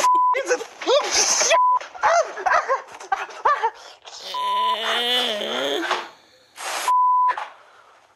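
A man shouting and cursing in pain, his swear words covered by four short censor bleeps at one steady pitch. About midway he lets out a long, wavering wail.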